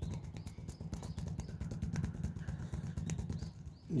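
The fleshy outer edge of a hand slapping repeatedly on a stone ledge in knife-hand strikes, a quick, even series of many slaps a second, to toughen the striking edge of the hand.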